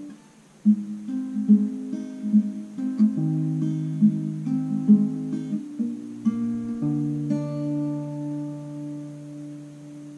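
Steel-string acoustic guitar with a capo, fingerpicked in an arpeggio pattern, one plucked note after another. After a brief pause at the start the picking runs for several seconds, and the last chord is left ringing and fading away.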